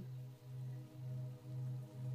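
Soft ambient background music: a low held tone that swells and fades about twice a second, with fainter higher tones sustained above it.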